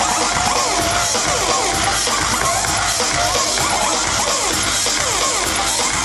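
Loud electronic dance music from a live DJ set, played over a large hall's sound system with a crowd under it, and with pitch sweeps rising and falling throughout.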